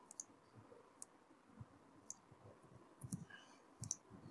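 A handful of faint, scattered clicks from a computer mouse, otherwise near silence.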